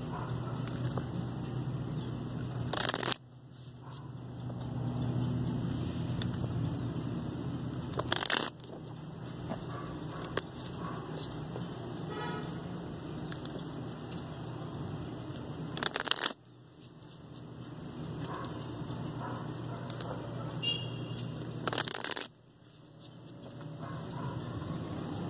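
A deck of tarot cards being shuffled by hand, with four short, sharp riffling bursts several seconds apart, over a steady low hum.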